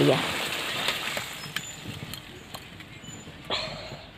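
Fish curry being served from a kadai into a steel bowl: a few faint clicks of metal on metal, then a short scrape about three and a half seconds in.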